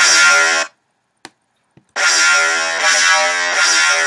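Synthesized dubstep bass patch from Native Instruments Massive, played as two bright notes rich in overtones: a short one at the start, then a held one from about two seconds in.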